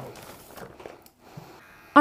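Faint rustling of a crinkly bag as a box is pulled out of it, fading out about halfway through.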